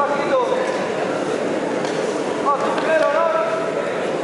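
Onlookers' voices in a sports hall: a steady background hubbub, with a short call at the start and a few more voiced calls about two and a half to three seconds in.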